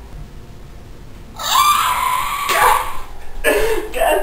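A person screaming: a loud cry begins about a second and a half in, holds one pitch for about a second, then falls away. A short vocal sound follows near the end.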